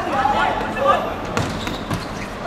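Players shouting during a small-sided football match, with two sharp thuds of the ball being struck, about a second and a half in and again just before the end.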